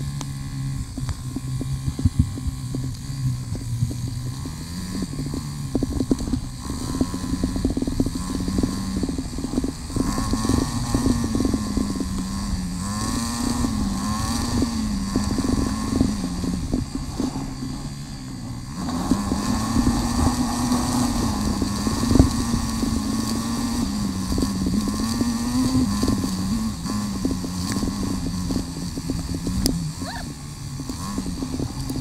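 KTM Freeride 350's single-cylinder four-stroke engine running under a rider, its pitch rising and falling again and again with the throttle. Frequent short knocks sound over it.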